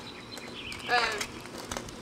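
A person's voice: one short syllable about a second in, with a few faint clicks around it.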